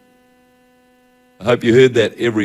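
Faint steady electrical hum from an amplified sound system, a low buzz with evenly spaced overtones, until a man's voice comes in about one and a half seconds in.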